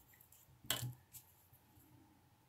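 A clear plastic ruler being put down on a sheet of paper on a desk: one light clack a little under a second in, then a fainter tap a moment later.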